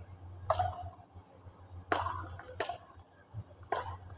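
Badminton rally: four sharp hits of racket strings on the shuttlecock, spaced about a second apart, each ringing briefly in a large hall.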